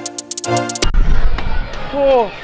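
Electronic background music with a beat and sustained tones that cuts off abruptly under a second in. Outdoor street noise with a low wind rumble on the microphone and a couple of sharp knocks follows, and a man's voice starts near the end.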